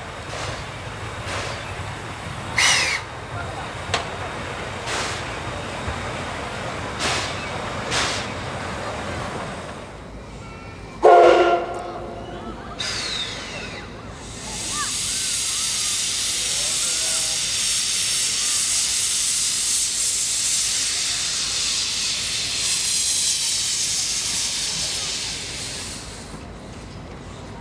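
C56-class steam locomotive moving slowly with a few soft, irregular exhaust puffs, then one short blast of its steam whistle about eleven seconds in. From about fifteen seconds on comes a long, steady, loud hiss of steam venting from the cylinder drain cocks.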